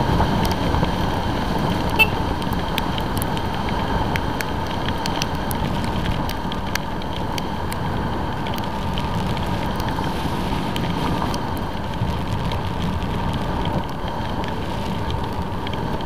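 Motorcycle running at low speed and then idling, heard from a helmet-mounted camera as a steady rumble and hiss, with scattered sharp ticks throughout.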